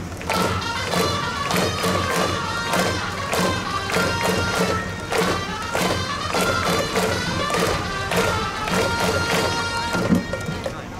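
Japanese pro-baseball cheering music for the batter at the plate: a brass-style melody over a steady, evenly repeating drum beat.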